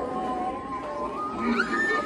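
Electronic sound effects from Halloween animatronic props: a wavering, wailing tone that slides up about one and a half seconds in into a long, high held wail.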